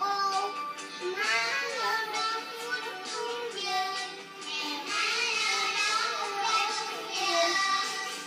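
Music with a young child singing: a continuous sung melody that glides and holds notes throughout.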